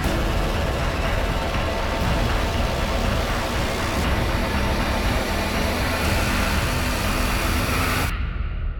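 Film-trailer sound design: a loud, dense wall of noise over a deep rumble, swelling slightly toward the end and cutting off suddenly.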